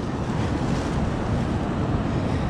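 Steady wind buffeting the microphone over the wash of ocean surf on a beach.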